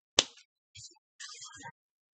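A single sharp snap of a tarot card being slapped down onto the table, followed by faint rustling of the card deck being handled.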